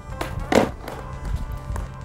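A skateboard hitting the asphalt with one sharp clack about half a second in, as a pop shove-it is landed, followed by a few lighter knocks, over quiet background music.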